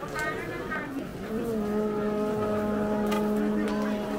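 Voices, then about a second in a long, steady note on one pitch begins with a short upward slide and is held for about three seconds.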